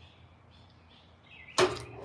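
Quiet outdoor background with faint, scattered bird chirps; about one and a half seconds in, a short loud rush of noise cuts in.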